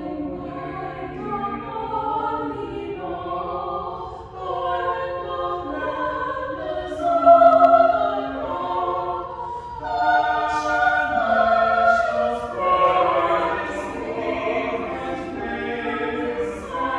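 A choir singing a slow piece in held notes, the pitch moving from note to note, with the words' consonants audible.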